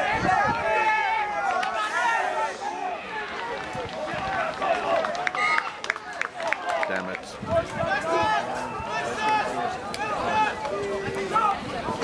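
Several voices shouting and calling over one another, with no clear words: players and sideline spectators at a rugby match during play.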